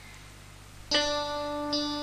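A faint hiss, then about a second in a plucked string instrument strikes a note that rings on, with a second, higher note soon after: the instrumental backing of a cải lương karaoke track.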